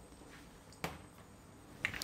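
A single sharp click a little under a second in, from a glass olive oil bottle set down on a stainless steel counter; otherwise quiet room tone.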